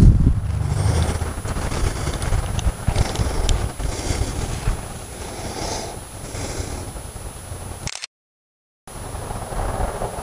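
Wind rumbling on the camera microphone with rustling and faint handling clicks, strongest at the start and easing off. The sound cuts to complete silence for just under a second near the end.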